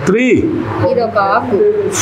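Speech: a man counting aloud in English, with other voices talking over each other in between.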